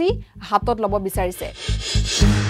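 Background news-bulletin music with a steady low beat of about four pulses a second under a woman's voice, then a swelling whoosh of noise near the end.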